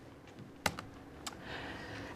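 Two computer keyboard key clicks, a little over half a second apart, pressed to advance the presentation to the next slide.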